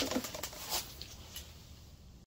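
A few light clicks and rattles of a small plastic food-processor chopper's bowl and lid being handled and fitted together, mostly in the first second.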